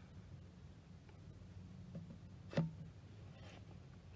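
Brake fluid being poured from a plastic bottle into a plastic brake master cylinder reservoir, faint, with one short knock about two and a half seconds in.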